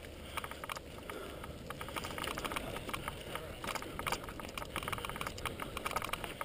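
Mountain bike riding fast down a dirt trail covered in dry leaves: tyres running over the ground and the bike rattling in an irregular stream of small clicks and knocks.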